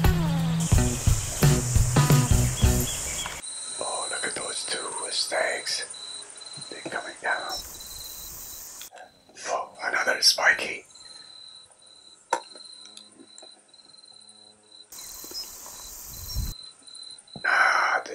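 Background music for the first three seconds or so, then it cuts to field sound. A steady, high insect chirr goes on throughout, with hushed, whispered voices coming and going and a single click about twelve seconds in.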